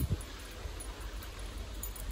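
Quiet outdoor background: a steady, even hiss over a low rumble, with no birdsong to be heard.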